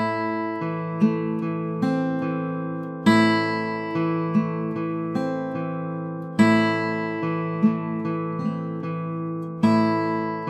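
Eastman AC-508 steel-string acoustic guitar played with hybrid Travis picking: a plucked bass note and higher melody notes, all left to ring into each other. A strongly accented note comes about every three seconds as each phrase starts over.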